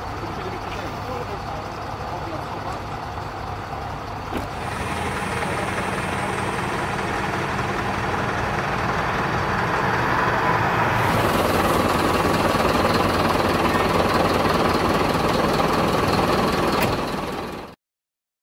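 An engine running steadily, with voices in the background. It grows louder about four seconds in and again about eleven seconds in, then cuts off just before the end.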